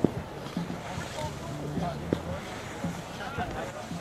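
Wind on the microphone with faint voices in the background, and two sharp knocks, one at the start and one about two seconds in.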